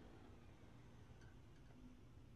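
Near silence with a faint low hum, just after an upright vacuum cleaner has been switched off: the last of its falling whine fades out at the very start.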